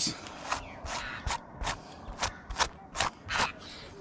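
A golden perch (yellowbelly) shifting and being handled on a plastic brag mat: a run of about ten irregular soft slaps and rustles.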